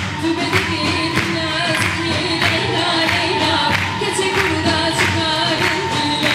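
A woman singing a Kurdish folk melody into a microphone, accompanied by an ensemble of large frame drums (erbane and def) beating a steady rhythm.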